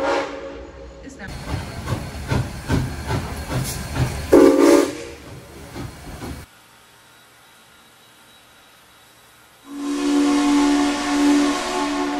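Steam locomotive hissing and chuffing in irregular strokes, with a short whistle blast about four seconds in. The sound cuts off about halfway through, and after a three-second pause a steady held tone starts near the end.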